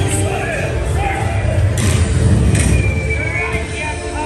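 Dark-ride cannon battle effects: a heavy low booming rumble that swells to its loudest between about two and three seconds, with sharp cracks around two and two and a half seconds. Shouting animatronic pirate voices and ride music go on over it.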